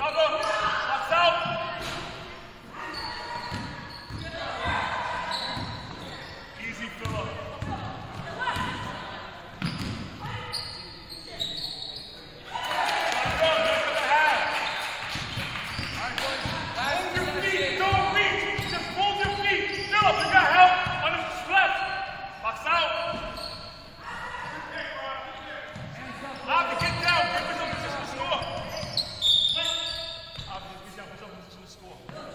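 A basketball being dribbled and bounced on a hardwood gym floor, with indistinct shouts and calls from players and spectators echoing in the hall. The voices are louder in the middle of the stretch.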